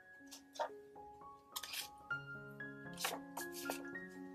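Scissors snipping through paper several times, cutting off a sheet's corner, over soft background music of slow held notes.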